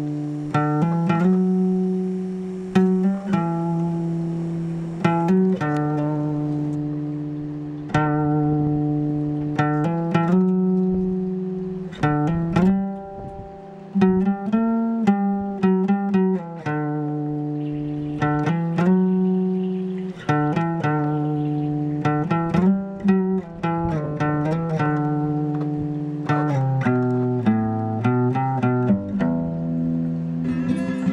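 Background music: a guitar picking slow notes and chords, one every second or two, each ringing out and fading, with the notes coming quicker near the end.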